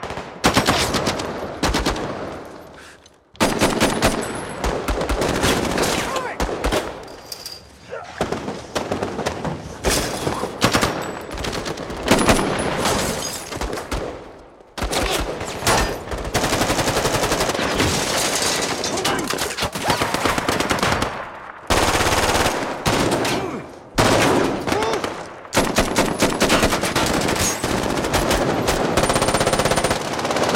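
Rifles firing in a film gunfight: rapid automatic bursts from several guns, overlapping almost without a break, with a few short lulls.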